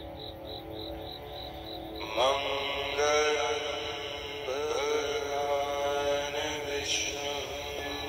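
Wordless chanting voice over a steady drone. The voice comes in about two seconds in and holds long sliding, swooping pitches in several phrases.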